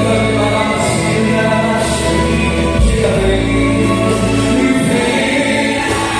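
Gospel worship music: group singing over held instrumental chords with deep bass notes.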